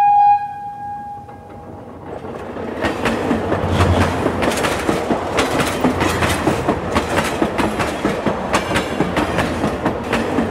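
Train sound effect: a single steady horn note that fades out in the first second or two, then a train running on the rails, its rumble building and its wheels clattering over the rail joints.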